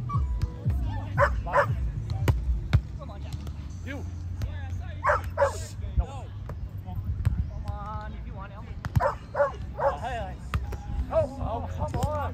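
A dog barking several times in short calls, often two at a time, with one longer wavering whine. Sharp slaps of hands striking a volleyball are heard during the rally.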